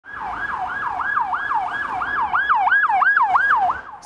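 Emergency vehicle siren in a fast yelp, each sweep rising sharply and falling back, about three times a second, a little louder from about halfway through.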